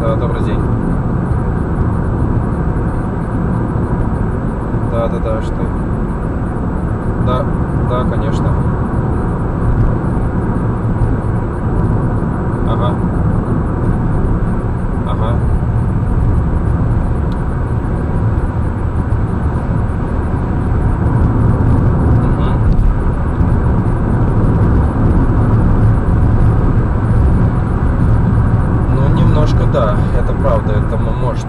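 Steady low rumble of tyre and engine noise inside a car cruising on a highway, getting somewhat louder in the second half.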